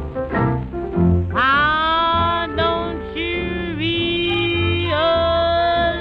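Instrumental break of a 1938 small-band jazz-blues record: short plucked notes over a pulsing bass, then from about a second in a lead melody instrument plays long held notes that scoop and bend in pitch. Narrow, old-record sound with no top end.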